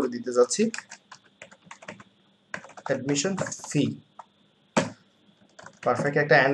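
Typing on a computer keyboard: a run of quick, irregular key clicks with short pauses between bursts.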